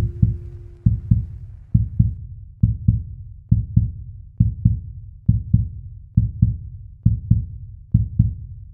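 Heartbeat sound effect in the song's outro: low double thumps, lub-dub, a pair a little more often than once a second. A held musical tone dies away in the first moment.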